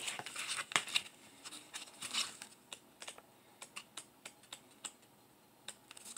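Off-camera hands handling paper: light, irregular clicks and taps with a few brief soft rustles, thinning out towards the end.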